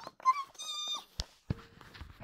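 A child's high, squeaky animal-like call, a short rising squeak and then a held meow-like whine of about half a second, as if voicing a toy pet; two sharp clicks of plastic toy pieces follow.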